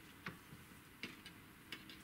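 A handful of faint, scattered light clicks: a metal caliper being handled and set against a fishing rod blank and its guide ring.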